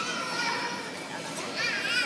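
A baby's high-pitched babbling: two short vocalisations, one at the start and a louder one near the end.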